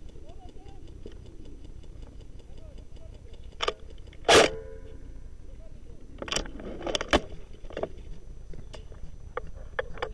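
An airsoft electric rifle fires a single shot about four seconds in: a sharp crack with a short whir from the gearbox. A few fainter clicks follow over the next few seconds, with faint distant voices underneath.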